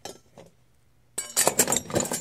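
Hard objects on a workbench clinking and clattering as they are shoved aside, a few light clicks at first and then a loud run of clatter from about a second in.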